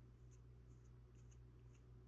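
Near silence: faint light scratches of a small sculpting tool working medium-grade clay, several in two seconds, over a low steady hum.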